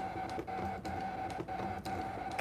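Brother ScanNCut SDX125 cutting machine running as it cuts paper: a steady motor hum with a few faint, irregular clicks.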